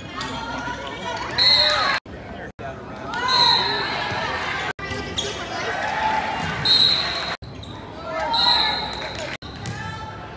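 Spectators' voices and shouts echoing around a school gymnasium during a volleyball rally, with the ball being hit and bouncing on the hardwood floor. Four short, high-pitched squeaks stand out, and the sound cuts out briefly several times.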